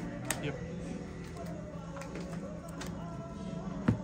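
Sleeved trading cards tapped and set down on the table: a short click just after the start and a sharper, louder tap near the end.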